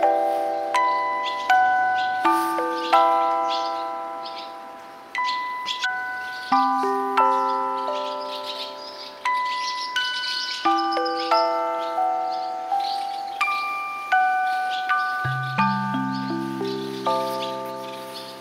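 Background music of gentle struck notes played in slow chords, each note fading after it sounds, with deeper notes joining about fifteen seconds in.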